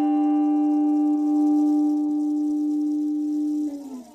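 Electric guitar's final held note ringing on with its overtones, very evenly sustained, then sagging in pitch and dying away near the end.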